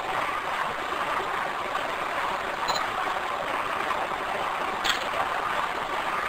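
Steady hiss of a voice recorder's background noise, with two faint camera clicks, one about halfway through and one near the end. The uploader believes the words "I'll try" can be heard in the hiss after the second click.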